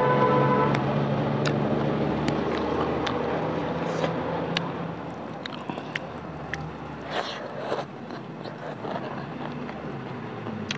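Close-miked eating sounds: chewing with sharp, wet mouth clicks and lip smacks. A steady droning hum sits underneath and fades out about halfway through.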